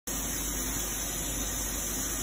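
Steady hum and hiss of a Daewoo DMV 4020 CNC vertical machining center running at idle.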